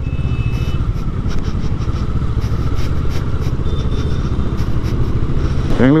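Motorcycle engine running steadily while riding, heard close from the bike itself, with road noise.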